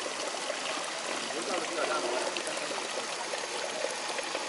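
Water running steadily from the spout of a nasone, a cast-iron Roman street drinking fountain, and falling onto the drain grate at its base.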